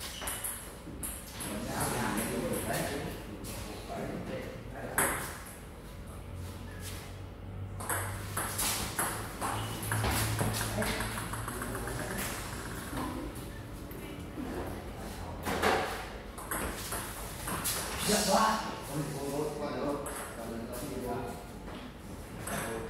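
Table tennis ball being hit back and forth in rallies: sharp clicks of the plastic ball off the paddles and the table, with people talking between strokes.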